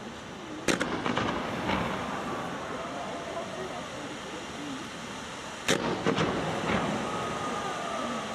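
Fireworks going off: two volleys of sharp bangs, one a little under a second in and one near six seconds, each a quick run of three or four reports. Voices talk faintly underneath.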